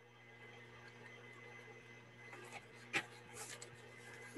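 Faint computer keyboard typing: a few soft key clicks, mostly in the second half, with one sharper click about three seconds in, over a steady low hum.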